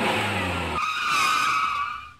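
A vehicle's engine running low, cut off abruptly under a second in by a loud, high skidding squeal that lasts about a second and fades out: a tour-bus sound effect for the end card.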